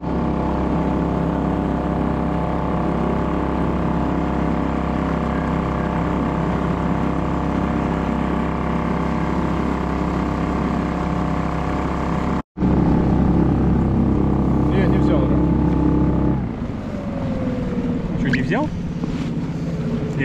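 Small Suzuki outboard motor running flat out at a steady high pitch, pushing the boat at speed. The sound breaks off briefly about twelve seconds in and stops abruptly a few seconds later.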